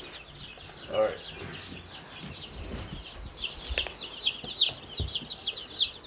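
A brood of young chicks peeping continuously, many short high falling peeps overlapping, growing busier in the second half. A few light knocks and a thud sound under the peeping.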